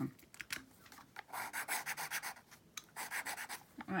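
Scratchy rubbing and a few light clicks from paper and craft materials being handled, with two longer stretches of scratching, one about a second in and one near the end.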